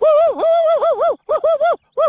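A dog howling in a run of short, wavering calls broken by brief pauses.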